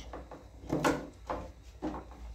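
Screwdriver working a screw out of the plastic base of an upturned tanquinho washing machine, giving a few sharp plastic clicks and scrapes.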